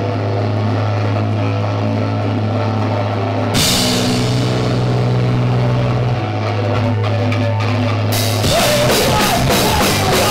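Live rock band with electric guitars, bass and a Tama drum kit playing a song intro: a held low bass-and-guitar note, then cymbals crash in about three and a half seconds in, and the full band comes in near the end with rapid drum hits.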